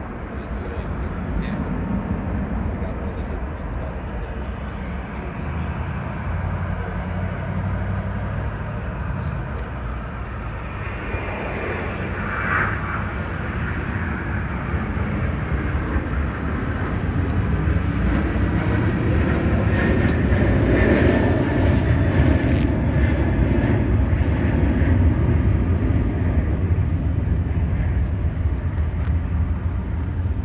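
Jet engine noise from a twin-engine airliner climbing out after takeoff: a continuous low rumble that grows louder in the second half.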